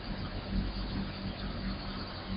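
Steady low background hum with an even hiss underneath.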